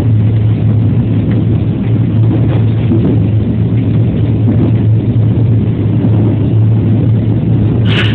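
Running noise of a JR West 207 series electric commuter train heard from just behind the cab: a loud, steady rumble with a low hum from motors and wheels on the rails. A brief sharp click comes right at the end.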